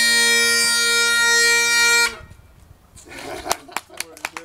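Great Highland bagpipe holding a final chanter note over its drones, which stops abruptly about halfway through. A brief voice and the first few hand claps follow near the end.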